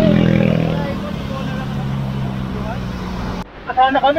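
Motor scooter engine running as it passes close by, loudest at the start and easing off over about three seconds. It cuts off abruptly near the end, where a voice begins.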